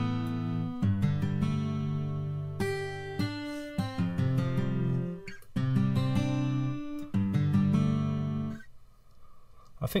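A recorded guitar part of sustained chords, played back through the OhmBoyz delay plugin set to a medium chorus preset, which choruses the guitar slightly. The chords change about once a second and stop about eight and a half seconds in.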